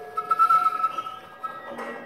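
Concert flute holding a high note for about a second, then sounding it again briefly. A short burst of breathy noise comes near the end.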